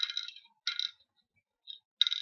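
Hard seed counters dropped into the hollowed pits of a wooden pallanguzhi board, each landing with a short clattering click, about three drops in quick succession.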